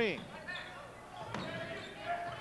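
Basketball bouncing on a hardwood gym floor during play, with one sharp bounce about a second and a half in, over faint crowd chatter.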